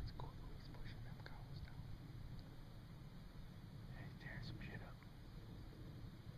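Faint whispering over a low, steady rumble.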